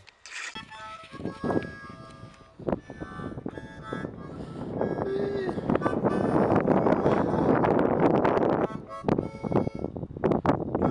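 Rushing wind noise on the microphone, building from about four seconds in and dropping away about a second before the end, over background music.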